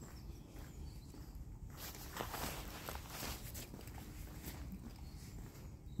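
Faint footsteps of a person walking outdoors.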